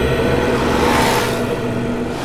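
A whoosh transition sound effect: a rush of noise that swells to a peak about a second in and then fades, over a low held tone.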